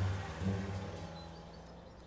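Low engine hum of a cartoon fire engine driving off, fading away steadily over about two seconds.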